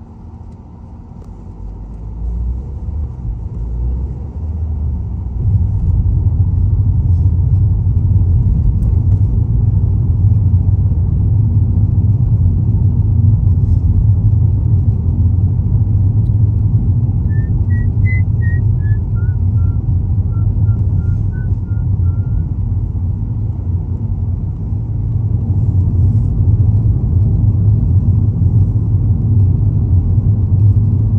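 Car engine and road rumble heard from inside the cabin. It builds over the first few seconds as the car gathers speed away from the junction, then holds steady while cruising.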